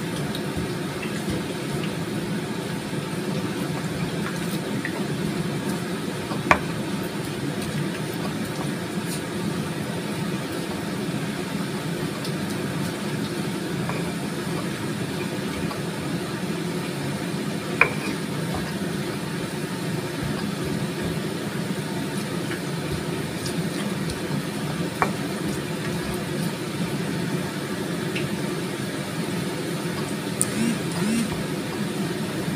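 Stone pestle crushing fried potatoes in a stone mortar, with three sharp stone-on-stone knocks spaced several seconds apart, over a steady low hum from the kitchen.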